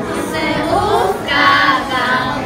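A group of children singing together as a choir, holding long, wavering notes.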